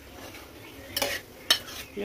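A metal spoon stirring cooked okra in an aluminium pot, scraping through the vegetables and knocking against the pot twice, about a second in and again half a second later.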